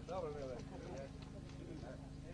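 Men's voices talking in the background, clearest in the first second, over a steady low buzzing hum.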